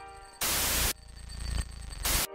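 Electronic glitch sound effects: a loud half-second burst of white-noise static about half a second in, over a low rumble and fainter crackling hiss.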